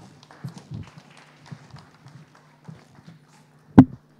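Footsteps and light knocks on a wooden stage floor, with one much louder thump near the end, over a steady low hum.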